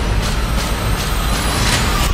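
Trailer sound effects: a dense rush of noise over a deep rumble, hit by a quick run of sharp whooshing impacts, swelling to a peak before the hiss cuts off suddenly at the end while the rumble goes on.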